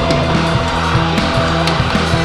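Psychedelic rock music with guitar, keyboards and drums playing steadily, no vocals.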